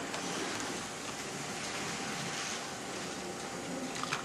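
Heljan 00 gauge Class 14 model diesel locomotive running along the track: a steady whirr of its motor and wheels on the rails, with a faint steady whine.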